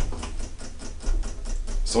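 Elevator car door mechanism ticking in a rapid, steady run of small clicks. The rider takes it for a fault: something very wrong with the inner door or the door interlock.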